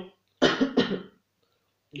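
A man coughs twice in quick succession, two short bursts about half a second in.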